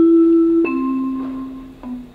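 Chime of a council chamber's electronic voting system: slow bell-like notes, each lower than the last, a new one about every second and fading out, signalling the close of a vote as the tally is shown.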